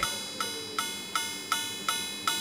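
Pendulum wall clock striking midnight: the same ringing chime note struck over and over, about two and a half strokes a second, each stroke dying away before the next.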